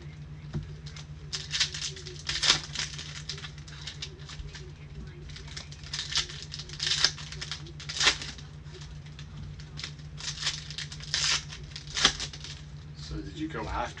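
Foil trading-card packs being crinkled and torn open by gloved hands, with the cards inside shuffled: irregular crinkling and tearing rustles, with a few sharper rips.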